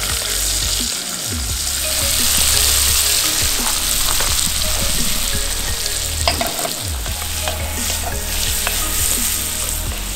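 Diced bacon, then chopped onions, sizzling in a cast iron skillet, with a wooden spoon scraping and clicking against the pan as the food is stirred.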